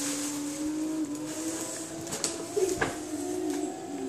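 Paper gift bag and tissue paper rustling as hands dig inside, with a few sharp crinkles a couple of seconds in, over a steady low hum.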